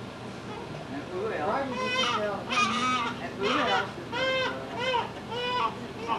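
Newborn baby crying in a series of short, high-pitched wails, about two a second, starting a couple of seconds in, with a low adult voice murmuring beneath.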